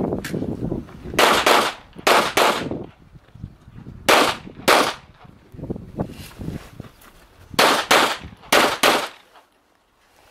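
Handgun shots fired in quick pairs (double-taps) at targets during an IPSC practical shooting stage: about ten loud shots in five pairs, the two shots of each pair a fraction of a second apart, with pauses of one to three seconds between pairs.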